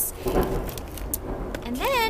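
Leafy succulent cuttings (elephant's bush) rustling as they are handled, with a couple of light clicks, over a low steady background rumble. A woman's voice begins near the end.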